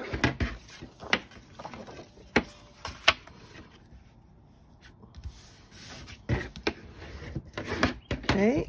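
Scored cardstock being folded and burnished with a bone folder: paper rubbing and sliding on a tabletop, with scattered light taps and a quieter stretch midway.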